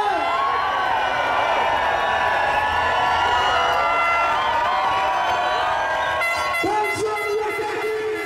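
Live dancehall concert crowd cheering and singing along at full volume. Near the end a single long note starts with a quick rise and is held steady.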